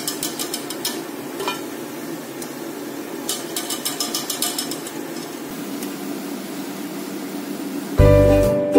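Chana dal vadas deep-frying in a steel kadhai of hot oil, the oil sizzling steadily. Twice, in the first second and again a few seconds in, a wire-mesh skimmer clicks rapidly against the pan as it moves through the vadas.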